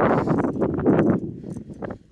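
Choppy water slapping against the hull of a drifting boat in a series of irregular knocks, with wind noise, fading near the end.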